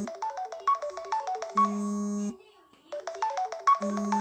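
Phone ringtone playing: a synthesized melody of quick notes over a held low tone. The phrase sounds twice, with a short pause between.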